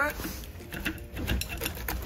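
Hands handling a crumbly Likit Granola seed block against its plastic holder, giving a few light clicks and crackles.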